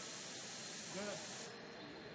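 Faint steady hiss of a stainless steel ACF-50 atomizing wand spraying a fog of anti-corrosion compound; the hiss thins out about one and a half seconds in.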